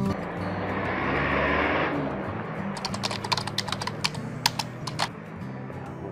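A rushing whoosh for about two seconds, then a run of sharp, irregular clicks and crackles close to the microphone, over faint background music.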